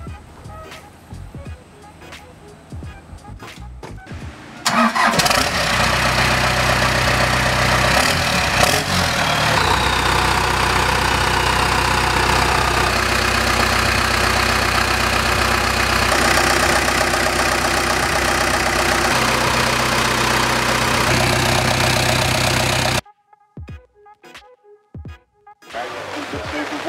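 Cummins 4BT four-cylinder turbo diesel firing up on its first start about five seconds in, then idling steadily. The sound cuts off suddenly near the end.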